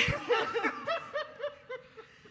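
Laughter: a run of short laughs that starts suddenly and fades away toward the end.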